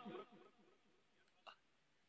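Near silence: the last echo of a man's amplified voice dies away in the first half second, and a faint short sound comes about one and a half seconds in.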